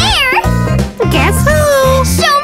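Children's song backing music with a steady beat, with cartoon character voices singing short lines over it: a swooping line near the start and a long held note in the second half.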